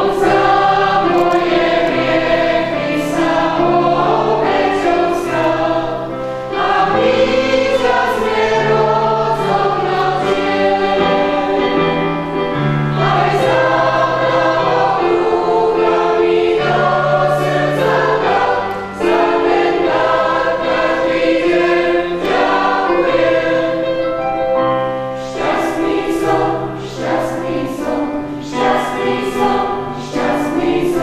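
Church choir of mostly women's voices, with a few men, singing a sacred song in parts, holding long chords.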